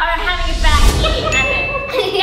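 A bell-like ding sound effect, a single held tone about a second and a half in, over wordless voices and a low rumble.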